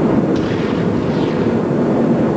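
A field of NASCAR Busch Series stock cars' V8 engines running together at speed: a loud, dense, steady rumble of many cars at once, with no single engine standing out.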